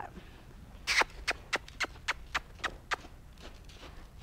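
A horse's hooves stepping on dirt arena footing: a string of irregular knocks and clicks, the loudest about a second in.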